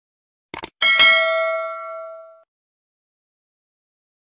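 Subscribe-button animation sound effect: two quick clicks, then a bright notification-bell ding that rings out and fades over about a second and a half.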